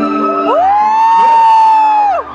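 A singer holds one long, high sung note, sliding up into it about half a second in and dropping away at the end, over a steady electric keyboard accompaniment.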